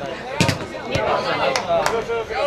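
A football being kicked and dribbled on the pitch: four sharp thuds, the loudest about half a second in, among players' shouts.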